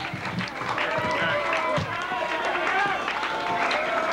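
Club audience between songs: many voices shouting and calling over one another, recorded by a consumer camcorder's built-in microphone.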